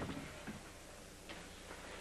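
Quiet room tone with a faint low hum and a few faint ticks.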